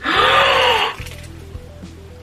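A woman's loud breathy gasp of surprise, a voiced 'ooh' that rises and falls in pitch and lasts under a second.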